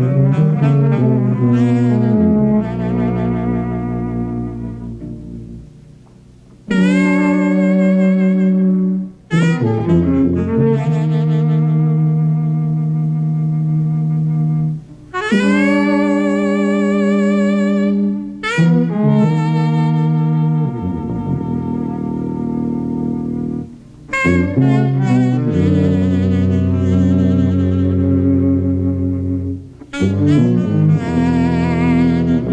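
Jazz trio of alto saxophone, tuba and cello playing long held notes, the saxophone wavering with vibrato over sustained low tuba and cello notes. The phrases break off in short pauses every few seconds.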